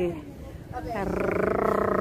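A woman's voice holding one long, steady, drawn-out vowel, a hesitation sound, starting a little under a second in, between words of her speech.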